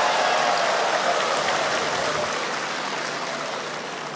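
Audience applauding, the clapping fading gradually.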